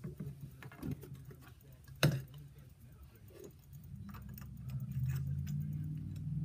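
Small clicks and taps of a copper push rod working a reed into a yew game call barrel, with one sharp click about two seconds in. A low hum grows in over the last two seconds.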